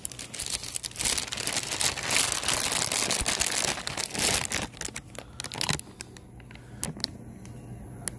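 Rustling, crinkling handling noise lasting about four seconds, with scattered clicks and knocks, then quieter.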